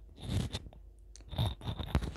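Lavalier microphone being handled as it is fastened to the front of a T-shirt: close, irregular scratching and rubbing of fabric against the mic, with a few short sharp clicks.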